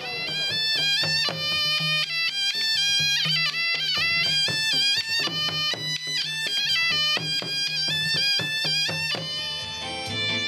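Cham traditional music: a double-reed saranai shawm plays a reedy, stepwise ornamented melody over frequent hand-beaten strokes on two ginăng barrel drums, with a steady low drone beneath.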